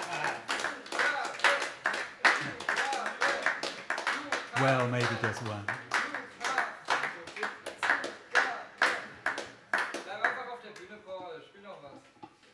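Audience applauding at the end of a song, with voices among the clapping. The applause thins out and stops about ten seconds in.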